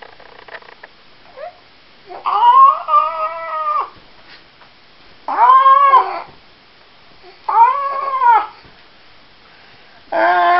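Baby making drawn-out, high-pitched cooing vocal sounds, three of them, each rising and then falling in pitch; the first, about two seconds in, is the longest.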